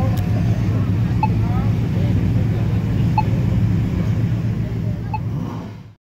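Decorated parade cars and trucks rolling slowly past, their engines making a steady low rumble, with voices in the background. A short high beep repeats about every two seconds, and the sound fades out at the very end.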